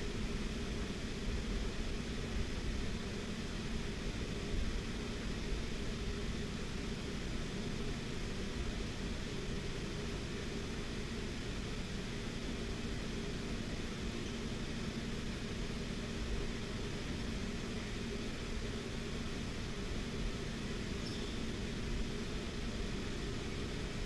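Electric fan running steadily: an even whoosh of air with a low hum.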